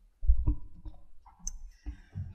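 A few low thumps and clicks from a lectern microphone being handled and set up just before the speaker begins.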